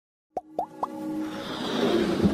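Animated logo intro sting: three quick rising-pitch plops in the first second, then a swelling electronic music build with a held tone that grows louder.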